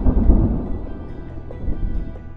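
Logo intro sound effect: a deep, thunder-like rumble that fades away over about two seconds, with music coming up underneath it.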